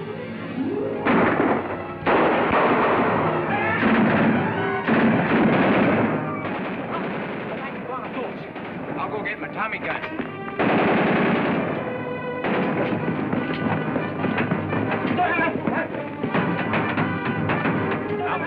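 Dramatic orchestral film score in loud surging swells with rising runs, over a rapid percussive rattle.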